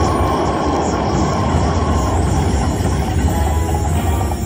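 Slot machine sound effect: a loud, steady rushing whoosh over a low hum while the reels spin.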